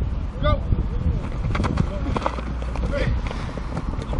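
Players' short shouts and calls across an open field, with a low wind rumble on the microphone and a few sharp clicks in the middle.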